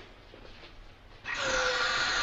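Gas hissing steadily from a pipe, starting suddenly a little past halfway, with a faint whistling tone in the hiss.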